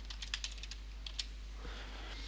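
Computer keyboard keys tapped in a quick run as a name is typed, the keystrokes stopping a little over a second in.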